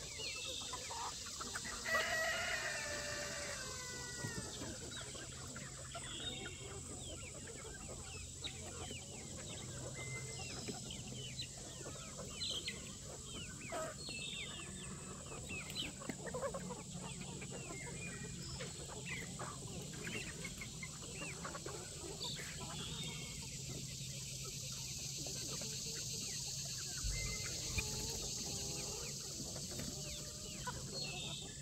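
A flock of free-range chickens clucking continually in many short calls, with one longer crow from a rooster about two seconds in.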